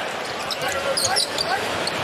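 Basketball court sound: steady arena crowd noise, with a few short, high squeaks of sneakers on the hardwood about a second in.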